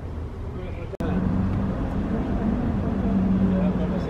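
A vehicle engine idling: a steady low hum that starts abruptly about a second in, with faint voices under it.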